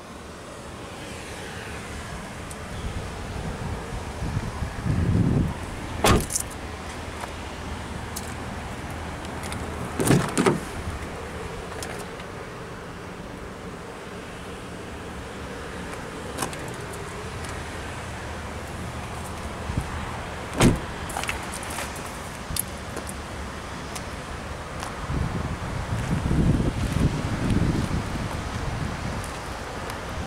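Car doors of a 2012 Ford Escape being opened and shut while the camera is handled. Three sharp knocks come about 6, 10 and 21 seconds in, among softer low thuds and rustling.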